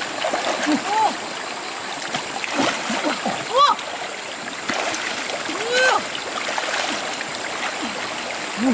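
Hands splashing and groping in a shallow rocky stream, feeling under fern fronds laid in the water for fish, over the steady rush of flowing water. Short voice calls break in now and then.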